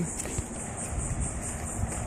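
Outdoor ambience: a steady high insect drone over a low wind rumble on the microphone, with a faint tap.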